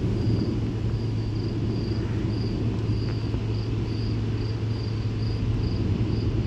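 Crickets chirping steadily, about two chirps a second, over a steady low rumble.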